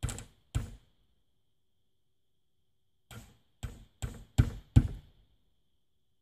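Hammer driving nails into cedar siding boards: two strikes, then after a pause a run of five quicker strikes that get louder toward the end.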